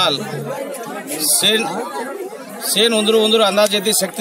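A man speaking into a handheld microphone, with a crowd chattering around him.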